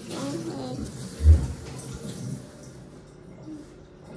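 A brief soft voice, then a dull low thump a little over a second in, followed by quiet room sound.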